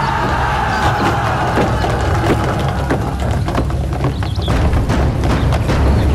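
Film soundtrack of a kung fu fight scene: a tense music score over a steady low rumble, with a held tone in the first few seconds and scattered sharp knocks and thuds.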